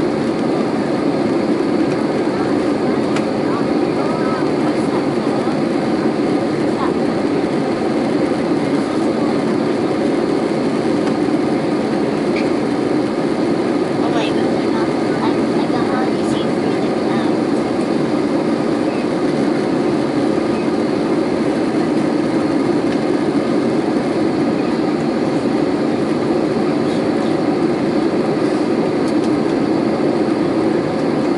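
Steady cabin noise of an Airbus A320 in flight, heard from a seat over the wing: an even, unbroken rush of engine and airflow noise.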